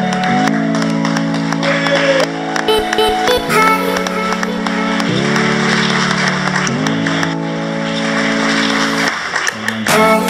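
Background music: a song of held chords that change about every second and a half, with clapping underneath in the middle.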